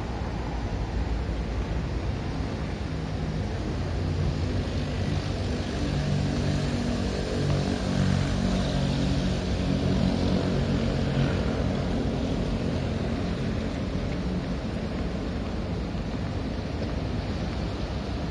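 Low engine drone that swells over several seconds and then fades, over a steady wash of outdoor noise.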